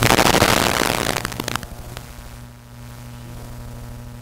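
A loud burst of crackling, rustling noise lasting about a second and a half, then a single click about two seconds in, over a steady low electrical hum.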